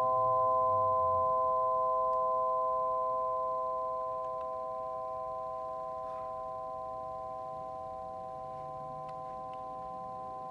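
Tuned metal rods of a Pythagorean tone generator ringing on together as four steady pure tones, slowly fading away without being struck again.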